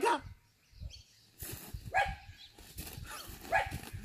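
A dog making short whining, yelping calls, three times in the second half.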